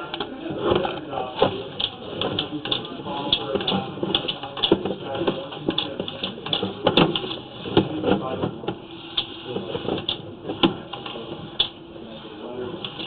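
Irregular clattering knocks and scrapes as a sewer inspection camera and its push cable are fed quickly along a drain pipe.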